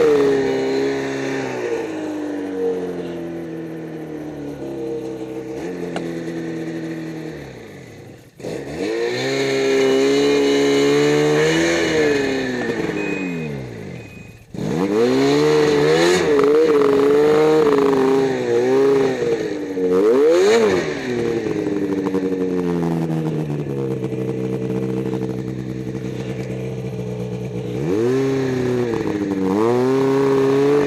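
Snowmobile engine running under throttle, its pitch rising and falling over and over as the rider works the throttle. The engine drops off almost to nothing twice, about 8 and 14 seconds in, then surges back up.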